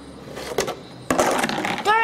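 A clear plastic bug box being handled: its lid and latches click and clatter, a few light clicks at first and then a louder burst of plastic rattling in the second half.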